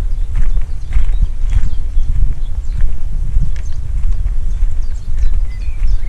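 Footsteps crunching on a gravel path at walking pace, about two steps a second, over a heavy low rumble on the microphone.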